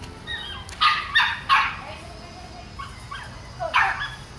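Dog barking: three quick barks about a second in, then one more near the end.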